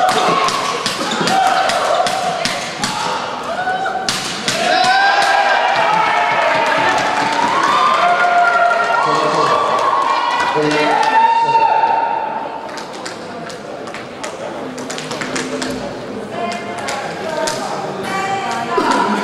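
Badminton doubles rally in a large sports hall: repeated sharp racket strikes on the shuttlecock and footwork on the court, with voices in the hall. The hits thin out and the sound drops after about twelve seconds, then the sharp hits return near the end.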